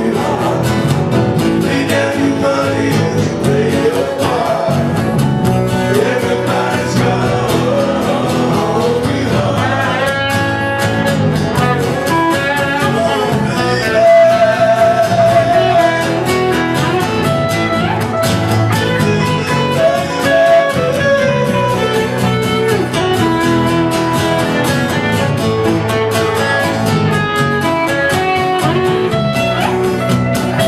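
A live band playing a song: strummed acoustic guitar, bass guitar and electric guitar, with a man singing the lead vocal.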